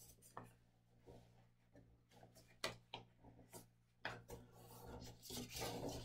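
Faint rustling and creasing of a sheet of paper being folded and pressed flat by hand on a wooden desk, with a few soft scattered clicks and a longer rustle building near the end, over a low steady hum.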